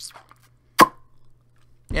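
A single sharp click with a brief ring after it, a little under a second in, during a swig from a plastic bottle; otherwise quiet.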